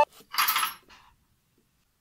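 A curtain pulled along its rail: one brief swish, about half a second long, with a light metallic clink of the curtain rings.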